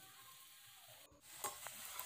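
Faint hiss for about a second, then pork pieces frying in a dry pan in their own released fat begin to sizzle, growing louder, with a couple of light clicks.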